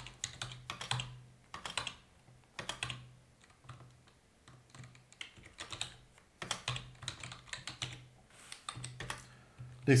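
Computer keyboard typing: short runs of rapid keystrokes separated by brief pauses.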